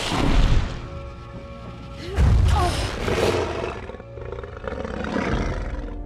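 A dragon roaring in a film soundtrack: a loud roar at the start and a louder one about two seconds in, with a softer swell later, over orchestral background music.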